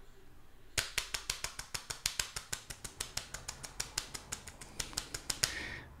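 A computer keyboard being typed on: a quick run of key clicks, about eight a second, starting about a second in and stopping just before the end. It is picked up through the microphone with no noise suppression applied.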